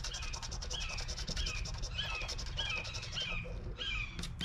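Rapid scratching of a poker-chip scratcher across the latex of a scratch-off lottery ticket. Over it a bird repeats a short chirping call every half second or so.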